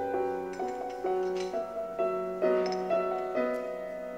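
Slow piano music, with single notes and chords struck about twice a second and left to ring and fade.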